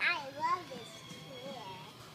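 A small child's high-pitched, gleeful squeals: two loud cries with swooping pitch in the first half second, then quieter voice sounds.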